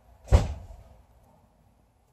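A single sharp thump about a third of a second in, heaviest in the low end and dying away within half a second.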